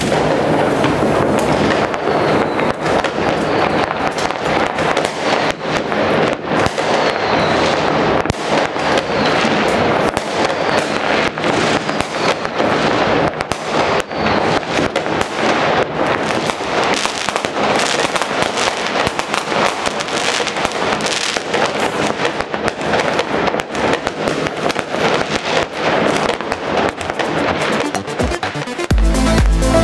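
Many fireworks going off at once all around a city: a continuous, dense barrage of overlapping bangs and crackles with no break.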